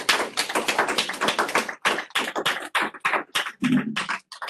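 A small group applauding, many quick hand claps overlapping, thinning out towards the end.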